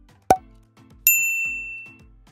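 A short pop, then a bright bell-like ding that rings out and fades over about a second: an editing sound effect marking the next question card, over faint background music.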